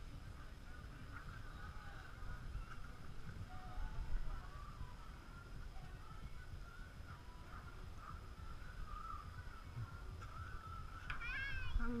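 Quiet paddling on open water, a low steady rumble with scattered faint short chirps. Near the end a high, pitched yelp sweeps up and then slides steeply down.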